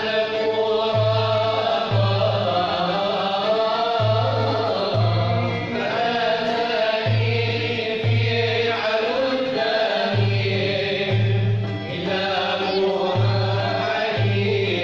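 Algerian Andalusian (andalou) ensemble performing: voices singing together over a string orchestra, with a low note repeating in pairs about once a second.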